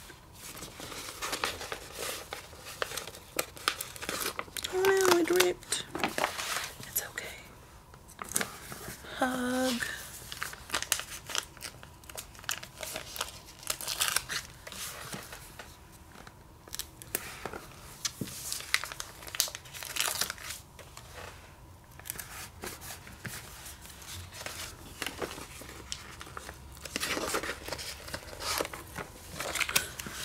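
Paper sticker sheets rustling, with many short irregular crackles as stickers are peeled from their backing and pressed onto notebook pages. A person's voice makes two brief sounds, about five and nine seconds in.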